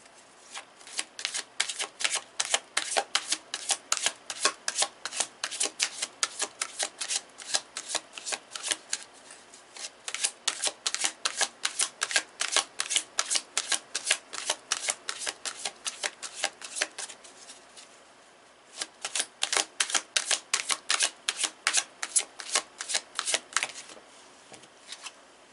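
A tarot deck being shuffled by hand: a rapid, even run of card snaps, about four a second, with a short pause before a second bout near the end.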